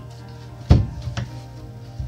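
Hatch lid on the bow casting deck of a Lund aluminum fishing boat shut over the live well: one sharp thud a little under a second in, then a lighter knock about half a second later, over steady background music.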